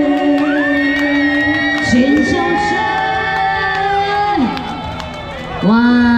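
Live female singing over an amplified backing track, ending a song with long held notes; the music falls away about four and a half seconds in. A woman starts talking over the PA near the end.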